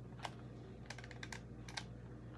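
Faint, light clicks from a hot glue gun being squeezed to push out glue: a few scattered sharp clicks, several close together in the second half, over a low steady hum.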